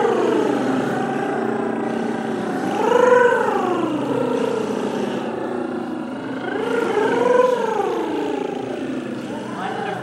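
A group of singers vocalizing on a lip or rolled-tongue trill, sliding the pitch up and down like a siren in long slow glides: one falling at the start, then rises and falls peaking about three seconds in and again about seven seconds in.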